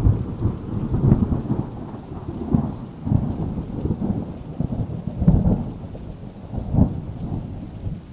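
Rumbling thunder rolling over steady rain, a storm ambience that swells and fades in irregular rolls, loudest a little past five seconds in.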